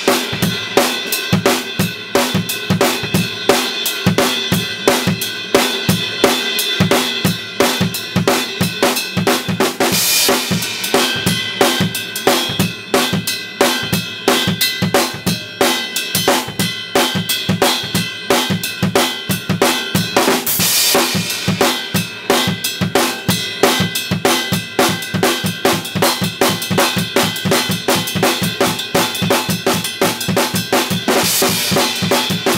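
Drum kit played live as a fast, busy groove in the up-tempo gospel shout style, with dense kick, snare and rimshot strokes. Crash cymbals wash over it about ten seconds in and again about twenty seconds in.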